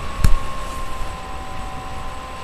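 A single sharp knock about a quarter of a second in, the loudest sound, over a steady background hiss and hum with faint steady tones.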